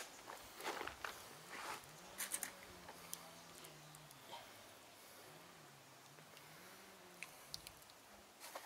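Very quiet: a few faint clicks and knocks, with a faint low wavering hum in the middle.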